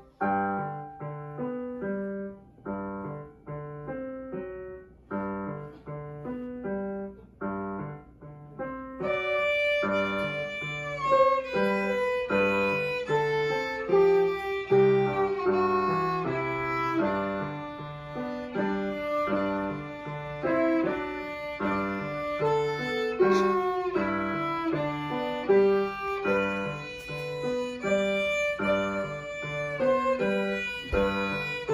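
Violin and piano duet. For the first nine seconds the piano plays alone, in evenly paced notes and chords that each fade away. Then the violin comes in with sustained, singing notes over the piano accompaniment.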